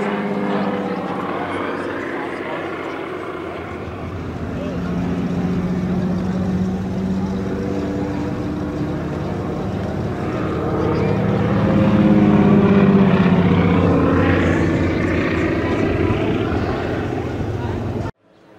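A vintage biplane's piston engine and propeller droning overhead during aerobatics, the pitch wavering as it manoeuvres. It grows louder as the plane comes low and is loudest about two-thirds of the way through.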